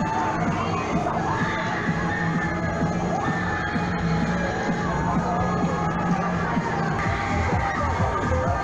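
Riders screaming and shrieking on a spinning fairground thrill ride, many voices overlapping and gliding up and down, over the steady din of the fair crowd.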